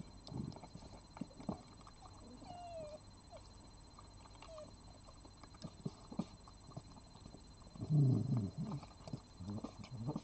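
Red fox eating dry kibble from a plate: irregular crunching and chewing clicks, with a louder, lower burst of sound about eight seconds in.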